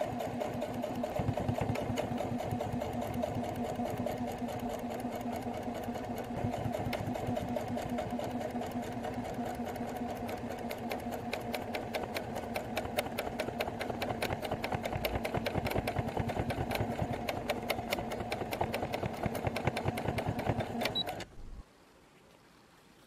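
Electric sewing machine stitching a strip of lace onto fabric, its needle running in a fast, even rhythm of strokes with a steady motor hum, then stopping abruptly near the end.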